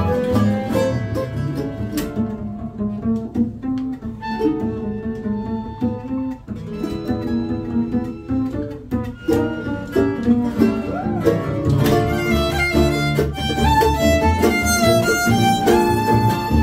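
Acoustic string band playing live: fiddle over nylon-string guitar and upright bass. The texture thins for a few seconds in the middle, then grows busier with quick, high notes over the last few seconds.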